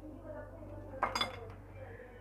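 A metal spoon clinks against a glass bowl of chutney about a second in, a sharp clink with a brief ring as the chutney is scooped up.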